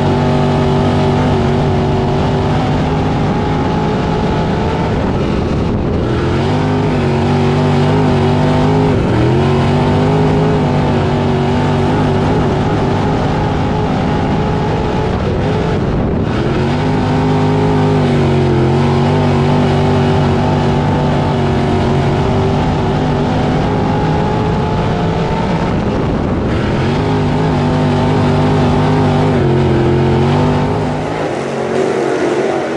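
Dirt crate late model's V8 engine heard from inside the cockpit while lapping a dirt track, held at high revs. Four times the revs drop as the throttle is lifted and climb back as it comes on again.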